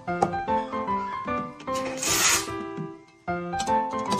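Background music with a piano-like melody, broken about two seconds in by a short, loud hiss of steam from an espresso machine's steam wand being purged into a towel before the milk is steamed.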